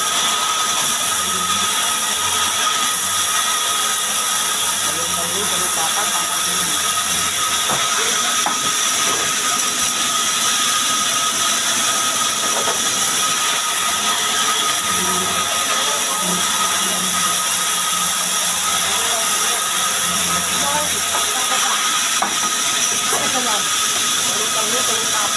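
Large vertical band saw of a sawmill running and ripping lengthwise through a log: a loud, steady hiss of the cut with a constant high whine from the blade.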